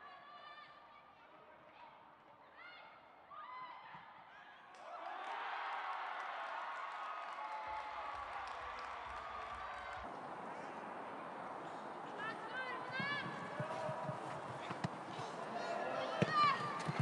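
Football match field sound: faint voices calling across the pitch over a thin stadium ambience, which gets louder about five seconds in, with more shouted calls and a few short thuds near the end.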